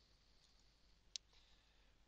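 A single computer mouse click a little past halfway, over near silence.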